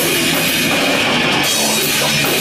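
Death metal band playing live: distorted electric guitars over a drum kit with constant cymbals, loud and steady with no break.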